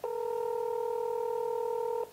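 Telephone ringback tone heard over a phone's speaker: one steady ring about two seconds long, the sign that the call is being connected and the called phone is ringing.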